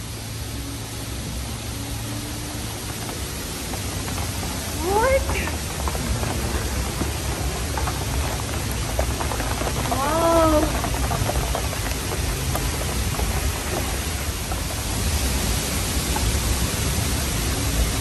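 Steady rush of a waterfall pouring into a canyon pool, its spray falling close by, getting louder over the first few seconds. A woman gives short cries about five and ten seconds in.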